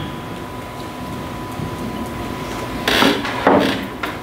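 Meeting-room tone with a steady hum and a faint constant whine. Two brief rustling knocks come about three seconds in, half a second apart.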